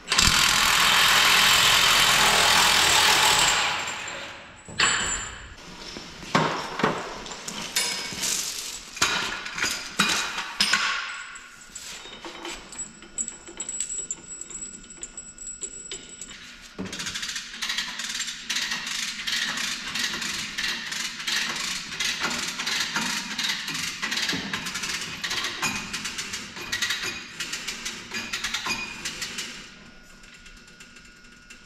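Work on a tractor's track undercarriage: a loud rush of noise for about the first three and a half seconds, then scattered metal knocks and clanks. About halfway through, background music with a quick percussive beat takes over.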